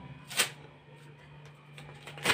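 A paper card being pulled off a wall, giving one short, sharp rip about half a second in, then faint rustling of the paper over a low steady hum.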